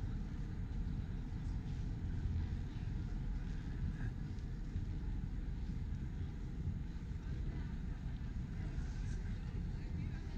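Steady low outdoor rumble of open-air city ambience, with faint voices of people nearby.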